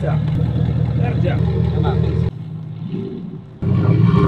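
Hummer truck's engine idling with a steady low rumble. It drops away a little past halfway and comes back near the end.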